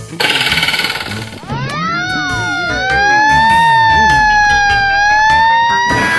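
Edited-in cartoon sound effects: a short buzzing rattle, then rising tones that settle into a loud held two-note siren-like wail while another tone glides steeply down through it.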